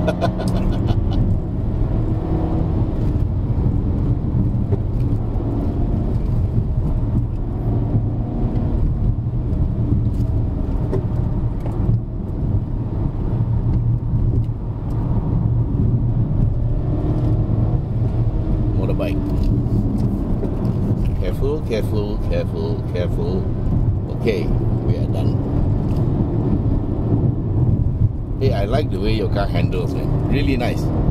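Steady engine hum and road noise heard inside the cabin of a BMW F30 330i being driven gently, its automatic gearbox left to shift on its own.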